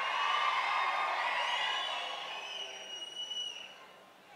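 Large crowd cheering and whistling, loudest at first and dying away over the last couple of seconds.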